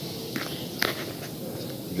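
A paintbrush working on watercolour paper: two short scratches, about a third of a second in and just before a second in, over faint room noise.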